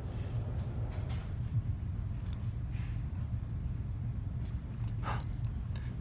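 Steady low background hum, with a few faint, brief scrapes and rustles about a second in, near three seconds and around five seconds.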